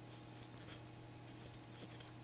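Near silence: a steady low electrical hum with faint scratchy rustles and small ticks from handling.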